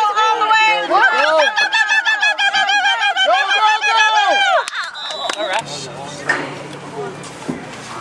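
A spectator yelling a rapid string of high-pitched cheers for about four and a half seconds, then quieter open-air crowd noise with a low steady hum underneath.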